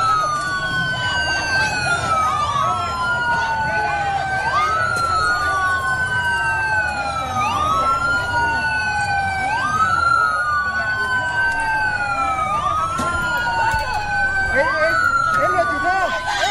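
Police siren wailing in a repeating cycle: each sweep rises quickly in pitch, then falls slowly over about two seconds. A crowd of voices murmurs underneath.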